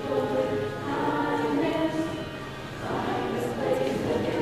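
Middle school choir singing a choral arrangement of a pop song.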